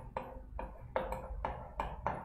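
Marker pen writing on a whiteboard: a faint run of short strokes, about three a second, some with a brief squeak of the tip.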